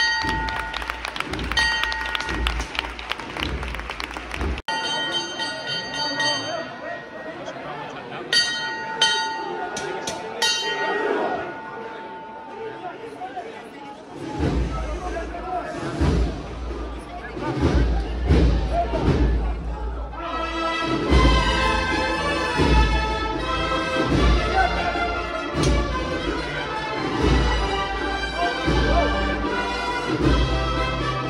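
Procession band music with a regular drumbeat over crowd voices. A fuller wind-band texture comes in about two-thirds of the way through. The sound cuts off abruptly for a moment about four and a half seconds in.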